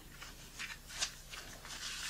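Faint rustling of knit work gloves with rubber-coated palms being pulled on: a series of short, scratchy strokes, the strongest near the end.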